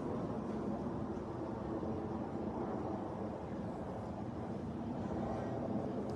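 Steady low rumble of outdoor street background noise, with a faint steady hum and no distinct events.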